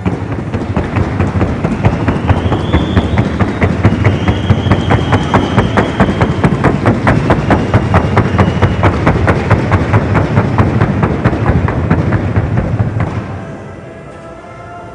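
Hooves of a Colombian trote horse striking a wooden sounding board, a rapid, even beat of about five sharp knocks a second that stops about a second before the end.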